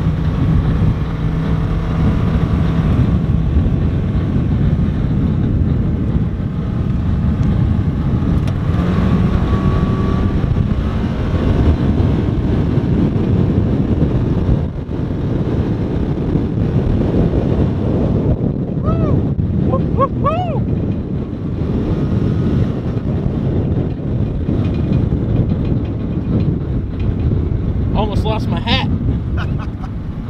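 2018 Polaris Ranger XP 1000's twin-cylinder engine running under load as the UTV drives through snow, heard from inside the cab. The pitch swings up and down several times in the second half.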